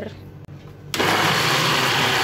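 Panasonic countertop blender switched on about a second in, its motor then running steadily and loudly as it blends a cream cheese and cream mixture.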